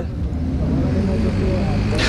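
Steady low rumble of road traffic and vehicle engines running at a street scene.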